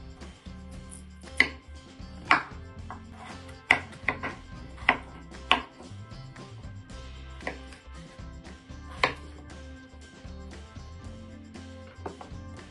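Kitchen knife chopping peeled potatoes on a wooden cutting board: a series of sharp, irregular knocks, most of them in the first half, over quiet background music.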